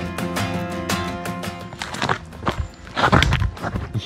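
Background music with a steady beat fades out about halfway through. Boot steps on a rocky dirt trail follow, ending in a louder, longer scrape about three seconds in as the hiker's footing slips on the descent.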